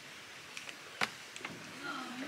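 A clear-bottomed kayak on the water, with a paddle being handled: faint water noise, a few light clicks and one sharper knock about a second in.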